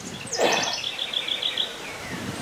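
A songbird singing a short, high phrase: a quick downward note, then a rapid trill of about eight notes a second. There is a brief rustle near its start.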